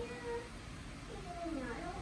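Faint, indistinct voices: short bits of distant speech, well below the main speaker's level.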